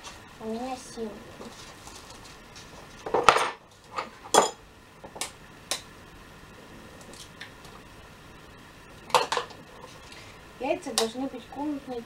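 Eggs being cracked on the rim of a plastic mixing basin: a handful of sharp knocks, several about three to six seconds in and another about nine seconds in.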